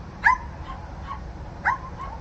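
A small dog barking twice, short high yips about a second and a half apart, with fainter yips between.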